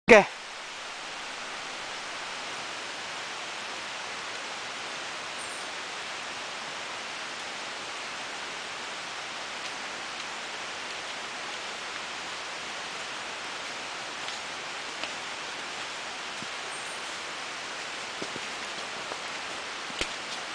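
A steady, even outdoor hiss with no clear source. A few faint ticks come in the second half.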